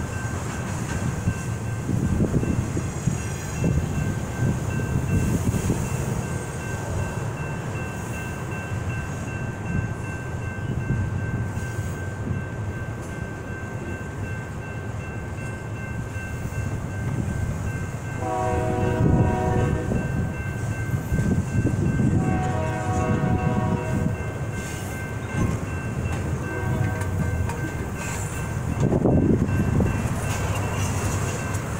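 Freight train cars rolling through a grade crossing with a steady low rumble and irregular clanks, while the crossing's electronic bells ring on throughout. Past the halfway point the lead locomotive's horn sounds a series of three or four blasts, the first two long.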